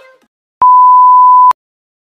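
A single loud, steady electronic beep, one pure tone held just under a second, starting and stopping abruptly with a click at each end.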